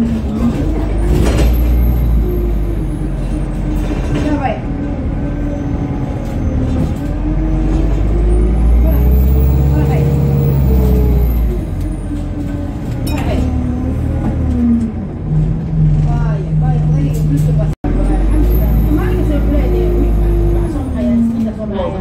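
ADL Enviro200 bus diesel engine and Allison automatic gearbox heard from inside the saloon, revving high as the bus pulls away. The pitch climbs and holds, then drops at each gear change, several times over, with a thin high whistle rising and falling over it. The sound cuts out for an instant near the end.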